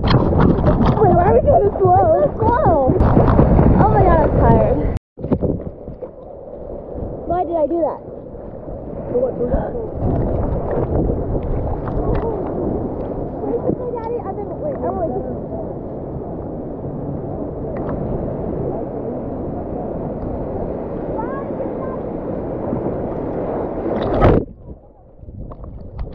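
Ocean water sloshing and splashing around a microphone held at the surface, a steady wash with occasional louder splashes. Voices and laughter are mixed in at first, there is an abrupt cut about five seconds in, and the sound drops away shortly before the end.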